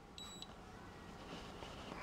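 Radio-control transmitter giving one short, high power-on beep just after being switched on.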